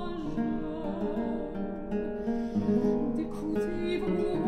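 French baroque air de cour played by a viol ensemble with a prominent plucked-string accompaniment, in a passage where the voices are less to the fore.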